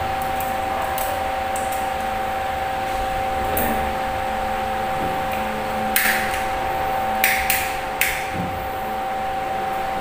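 Clicks and taps from handling a three-gang wall switch and pliers while wiring it: four sharp clicks between about six and eight seconds in. A steady hum runs underneath.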